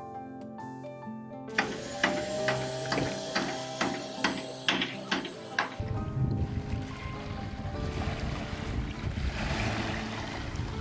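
Background music with evenly paced percussive notes, giving way about six seconds in to wind buffeting the microphone and small waves washing over a pebbly shore.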